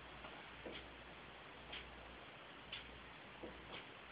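Near-quiet room tone with faint, regular ticks about once a second.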